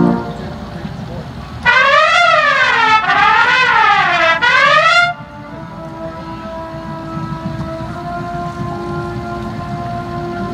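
A drum corps trumpet line playing in unison, sweeping its pitch smoothly up and down twice and then up once more in a warm-up glide exercise, all cutting off together about five seconds in. Faint held notes follow.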